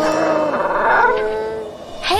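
The end of a children's cartoon song: a held vocal note slides down, with a voice-like call and backing music, then fades near the end.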